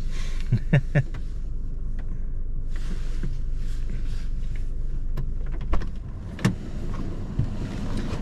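Steady low hum of a parked car, heard from inside the cabin. In the second half come a few sharp clicks and knocks as the driver's door is unlatched and opened.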